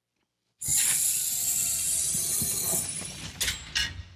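Sound-effect intro of a played promotional video: a sudden burst of hissing noise about half a second in that slowly fades, followed by two sharp clicks near the end.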